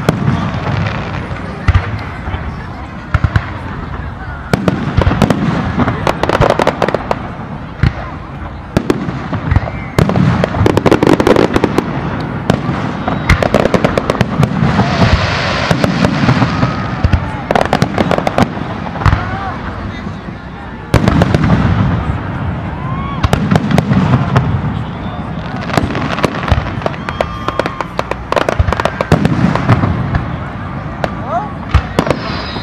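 Fireworks display: many sharp bangs and crackles going off in quick succession, with crowd voices throughout.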